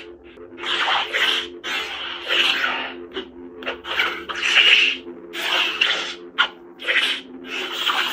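Lightsaber sound board playing the Elder Wand sound font: a steady hum with several low tones, overlaid by swing sounds, a rushing rasp about once a second as the hilt is moved.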